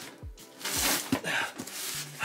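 Background music with a beat of deep bass kicks that drop in pitch.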